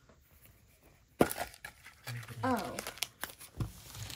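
Metal Poke Ball tin springing open with one sharp click about a second in, followed by rustling and light knocks as its contents are handled.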